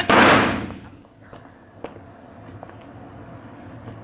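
Radio-drama gunshot sound effects: a loud burst of gunfire that dies away within about the first second, then a few faint, sharp clicks.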